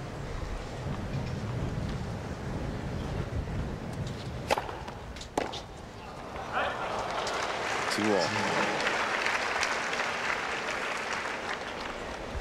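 Tennis ball struck by racket strings twice, about a second apart, in a short rally over a low rumble. The stadium crowd then breaks into applause and cheering that swells and holds, with a shout near the start of it.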